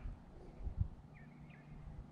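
Quiet pond-side ambience: a few short, high bird chirps over a low rumble, with a couple of dull bumps a little under a second in.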